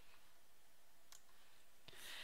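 Two faint computer mouse clicks, about a second in and near the end, over near-silent room tone.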